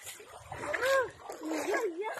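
Two rising-and-falling voice calls of effort over splashing and squelching in wet mud, as a motorcycle is pushed by hand up a muddy track with its engine off.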